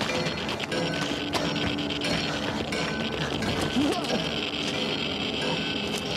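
Drama soundtrack of a Geiger counter crackling fast and continuously as radiation runs high, with shovels and debris clinking and clattering.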